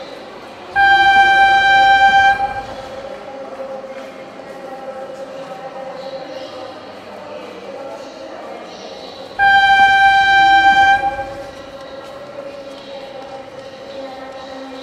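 Cat Linh–Ha Dong metro train arriving at an elevated platform, sounding two long horn blasts of one steady pitch, each about a second and a half, about eight seconds apart, over a steady hum.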